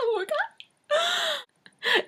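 A woman's mock sobbing: a short wavering cry, then a long, sharp gasping in-breath about a second in.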